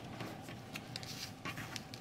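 Cross-stitch fabric being handled: a faint rustle with a few soft brushing sounds as the folded, thumb-creased cloth is pressed and opened out.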